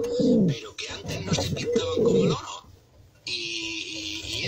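Male sporting pigeon cooing: several low coos, each falling in pitch, with a brief pause about three seconds in.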